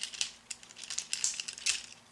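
Hard plastic parts of a Transformers Ramjet action figure clicking and scraping as they are handled and its wings folded back: a run of small irregular clicks.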